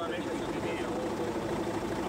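A car engine idling steadily, with people's voices talking over it.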